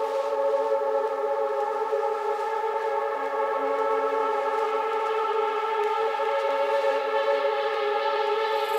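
Sustained synthesizer chord: several steady tones held without change, with no beat or bass, as the intro of an electronic rap track.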